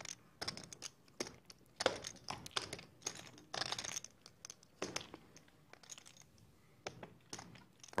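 Poker chips clicking lightly and irregularly as they are handled at the table, with a busier rattling run about three seconds in.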